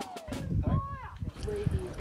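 A whistle-like transition sound effect, its pitch sliding steadily downward and fading about half a second in. It is followed by faint, brief voice-like chirps.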